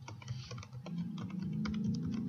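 Computer keyboard being typed on, a quick, irregular run of key clicks as a password is entered, over a low background hum.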